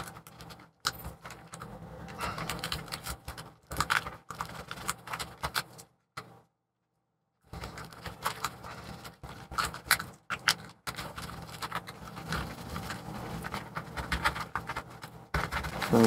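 A thin plastic pry card scraping and clicking in irregular bursts as it is worked under a glued-in MacBook Pro battery cell, cutting through adhesive strips softened with acetone. The sound cuts out completely for about a second and a half near the middle.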